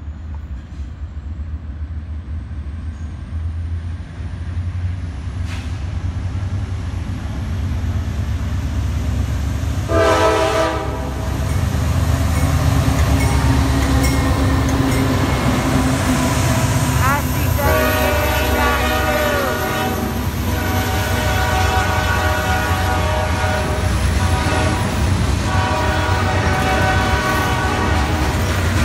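Freight train passing close by: the lead GE Dash 9 locomotive's diesel rumbles, building as it approaches and passes, and its K5LA multi-chime horn sounds a short blast about ten seconds in and longer blasts through the last ten seconds, over the steady noise of the cars rolling past.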